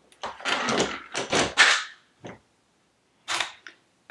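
Makeup items being handled on a desk: a run of clattering knocks and rustles for about two seconds, then a single click and one more short clatter.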